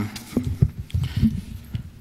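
Lectern microphone being handled and repositioned: a string of irregular knocks and bumps picked up straight through the mic.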